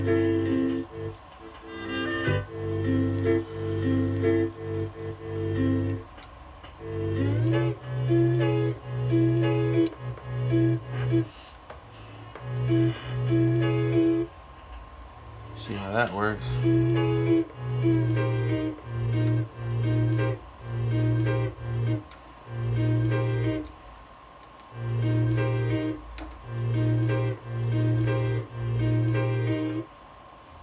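Akai S2000 sampler playing a repeating pattern of short held notes, low notes under higher ones, in a steady rhythm while its key-group pitch modulation is edited. Quick pitch sweeps up and back down come about seven and sixteen seconds in, from envelope modulation of the pitch.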